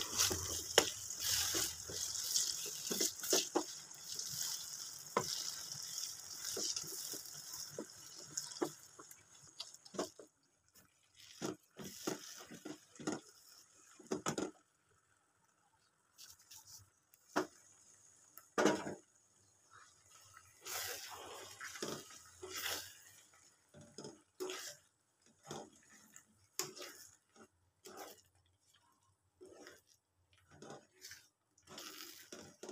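Tap water running into a sink, fading out about nine seconds in, with scattered light clicks and knocks of handling that carry on after the water stops.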